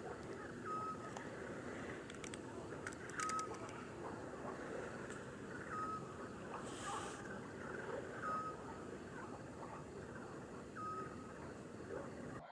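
A faint, short whistled note repeated about every two and a half seconds, as from a night bird calling near the water, over a steady low background hiss.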